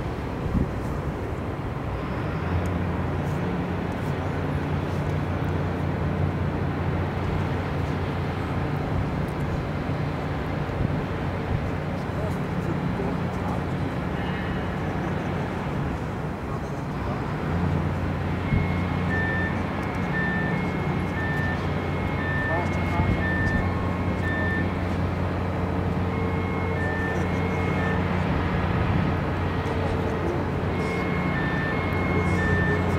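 A diesel engine on a ground service vehicle runs with a steady low hum, which drops away for a few seconds midway. From a little past halfway, an electronic warning beeper repeats about once a second, alternating between two high tones.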